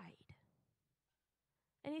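Speech only: a woman's voice finishing a phrase, about a second of near silence, then her voice starting again near the end.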